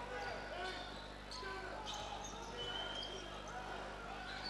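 Steady crowd murmur in a basketball arena during play, with a ball bouncing on the court and a short high squeak about two-thirds of the way in.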